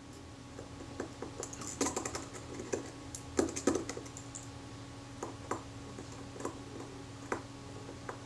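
Small, irregular metallic clicks and taps of a fine tool and tweezers working among the tiny parts of a camera leaf shutter, busiest about two seconds in and again at about three and a half seconds.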